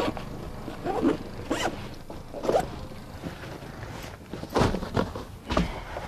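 A zipper on a soft-sided tackle bag pulled in several short strokes spread over a few seconds.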